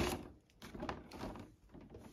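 A cardboard advent-calendar door being torn open, with one sharp snap at the start, then faint crackling and rustling as a small sachet is worked out of the compartment.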